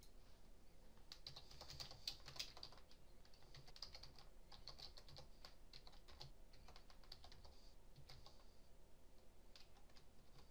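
Faint typing on a computer keyboard, a web address being keyed in: quick runs of key presses from about a second in until near the end.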